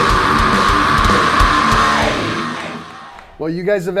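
Live thrash metal band playing: distorted electric guitars and pounding drums under a long held note. The music fades out about two to three seconds in.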